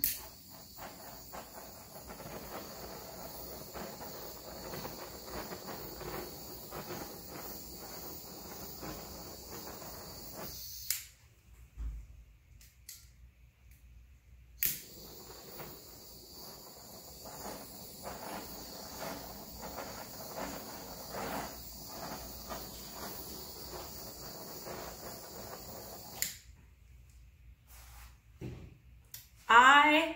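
Handheld butane torch hissing steadily as its flame is passed over wet poured acrylic paint. It cuts off about 11 seconds in, is relit with a click a few seconds later, and shuts off again near the end.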